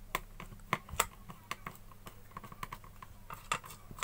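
Irregular light clicks and taps of hard plastic and metal parts being handled, with the loudest click about a second in: an electric iron's plastic handle being fitted and a screwdriver working at the wire terminals inside it.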